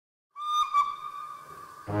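A steam locomotive whistle blown with a short dip in the middle, its single steady pitch fading away over about a second. Brass music starts right at the end.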